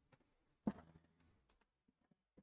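Near silence in a small room, broken once, about two-thirds of a second in, by a single brief knock.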